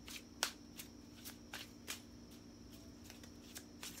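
A deck of tarot cards shuffled by hand: a string of short, soft card slaps, unevenly spaced at about two a second.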